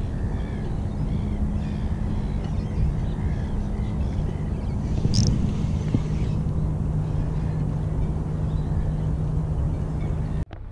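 A steady, low engine-like hum runs throughout, with a brief sharp sound about five seconds in and faint bird calls.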